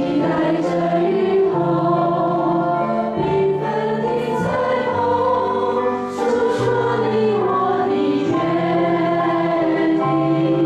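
Congregation and a small group of women singers on microphones singing a Mandarin hymn together, accompanied by acoustic guitar.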